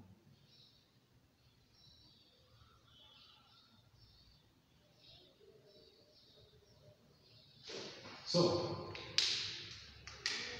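Faint, intermittent scratching of a felt-tip marker on a whiteboard as a drawing is outlined. Near the end, louder voice sounds break in with sharp starts.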